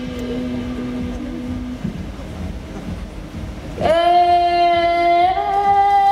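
A woman singing a long held high note without words, starting sharply about four seconds in and stepping up slightly in pitch partway through, over acoustic guitar; a lower held note fades early on.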